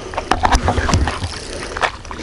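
A spinning reel clicking and rattling in irregular short ticks as the angler works it while playing a strongly pulling hooked fish.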